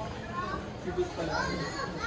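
Background chatter of other people's voices, among them high-pitched children's voices, heard faintly.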